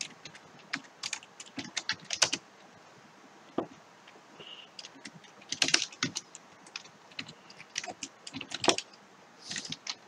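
Computer keyboard typing: irregular runs of keystrokes with short pauses between them.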